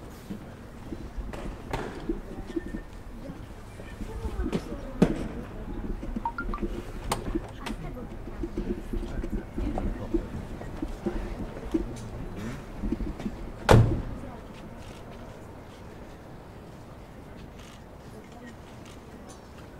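A heavy limousine door shut with a single loud thud about 14 seconds in, over a crowd talking.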